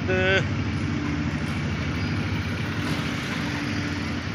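An engine running steadily at an even, unchanging speed: a low constant hum.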